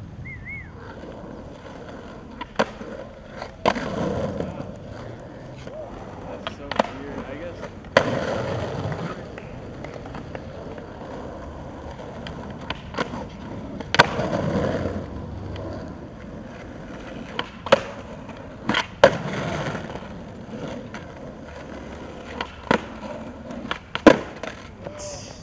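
Skateboard tricks on concrete: sharp clacks of the tail popping and the board landing, several of them followed by a second or two of wheels rolling, repeated throughout.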